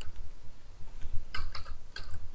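Computer keyboard being typed on: a short run of quick keystrokes about one and a half seconds in, with another click near the end.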